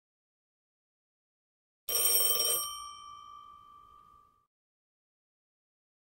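A school bell rings for under a second, about two seconds in, and its ringing tones then die away over about two seconds.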